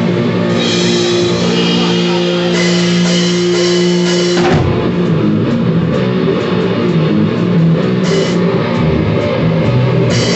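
Live rock band: a held electric guitar chord rings steadily for about four and a half seconds, then a drum hit brings in the full band, with drums, bass and distorted guitars playing the song.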